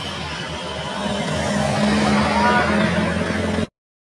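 A car driving past close by, its engine and tyre noise growing louder and peaking about two to three seconds in. The sound cuts off abruptly to silence just before the end.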